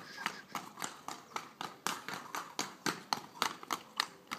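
Horse's hooves striking stone paving as it circles at a brisk gait, a steady clip-clop of about three to four hoofbeats a second.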